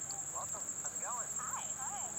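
Steady high-pitched insect chorus, with a few faint, short rising-and-falling calls in the second half.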